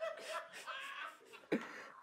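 A person giggling softly, breathy and held back, in short broken bursts.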